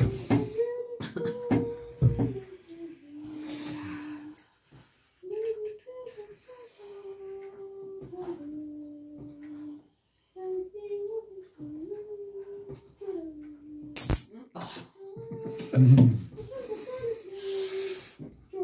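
A person humming a slow, wordless tune of long held notes that step up and down between a few pitches. A few light clicks of magnetic game stones being set down come near the start, and one sharp click about three-quarters of the way through.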